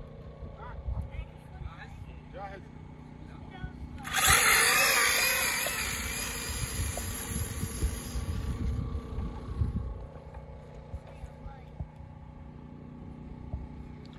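A 1/8 or 1/7 scale RC car launching at full throttle up a sand dune: about four seconds in, a sudden loud burst of motor and tyre noise starts, then fades over several seconds as the car climbs away.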